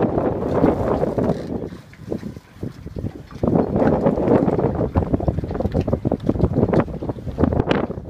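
Wind buffeting the microphone of a handheld camera, a loud gusty rumble that eases off for a second or so about two seconds in and then comes back.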